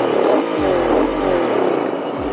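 Royal Enfield Interceptor 650's parallel-twin engine heard from the saddle, its note falling in pitch several times over as the revs drop while the bike slows.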